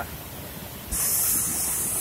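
Steady rushing of river rapids, and about a second in a loud high-pitched hiss starts suddenly and carries on to the end.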